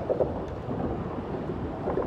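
Low, steady rumble of traffic on the highway bridge overhead, with two brief louder bumps about a quarter second in and near the end.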